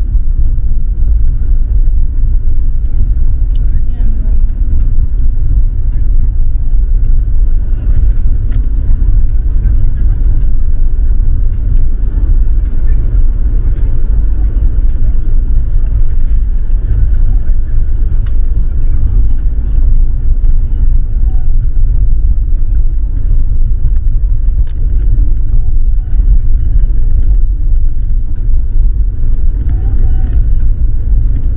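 Car cabin noise while driving on an unpaved dirt road: a loud, steady low rumble from the tyres and road, with scattered small knocks and rattles.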